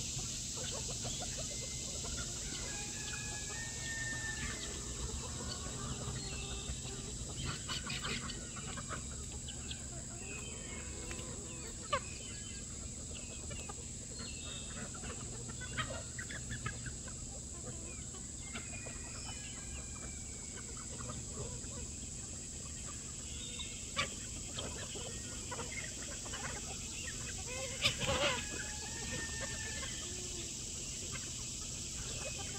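A large mixed flock of chickens clucking and calling while they feed, many short overlapping calls. A few sharp clicks stand out, and a steady low hum runs underneath.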